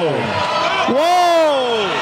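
A man's long drawn-out shout: the tail of one falls away at the start, and a second rises then falls in pitch about a second in, over crowd noise.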